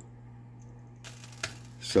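Small steel screws clicking and clinking against a magnetized screwdriver tip: a few light metallic ticks about a second in, over a low steady hum.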